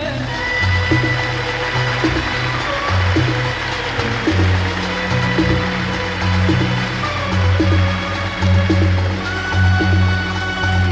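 Traditional Arabic orchestra of violins and cellos playing an instrumental passage over a moving bass line, with a steady beat of about one stroke a second; the singer's voice has stopped.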